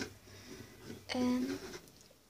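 Speech only: a girl's voice speaking Turkish, one short phrase about a second in.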